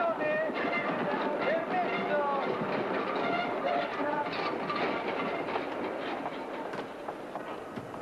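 Busy railway station platform ambience: a steady murmur of many voices over train noise.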